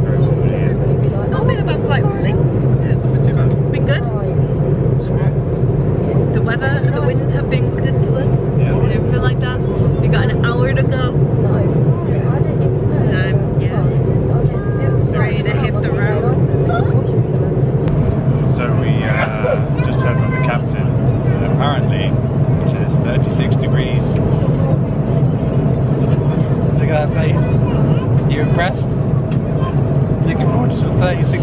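Steady low drone of a jet airliner's cabin in flight, with engine and air noise unchanging throughout.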